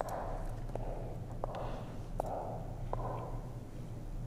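Faint a cappella pop song leaking from headphones, with a soft beat pulsing about every three-quarters of a second, over a low steady electrical hum.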